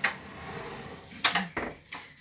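Wooden wardrobe door being swung shut by hand, with a sharp knock a little over a second in as it closes.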